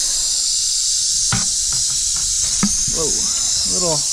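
Tiger rattlesnake rattling its tail, a steady high buzz that is a defensive warning from an agitated snake. Two sharp knocks come about a second and a half apart.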